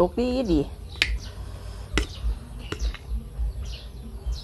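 Eating rice with a metal spoon from a ceramic bowl: three sharp clicks about a second apart, with small birds chirping faintly in the background.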